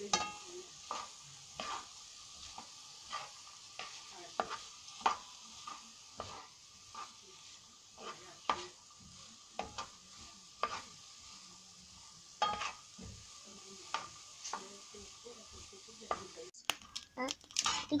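Wooden spoon stirring and scraping diced coconut in a non-stick frying pan, its knocks and scrapes coming irregularly about once a second, over a faint steady sizzle of the coconut frying as it browns.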